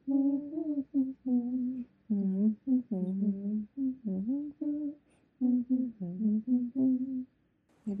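A woman humming a tune with closed lips, a long run of short notes stepping up and down in pitch, stopping about seven seconds in.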